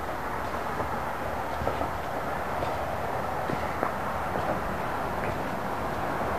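Steady outdoor background noise, a hiss with an unsteady low rumble, and a few faint clicks.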